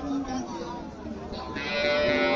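Cattle mooing: one long, loud call starting about a second and a half in, over the chatter of a crowd.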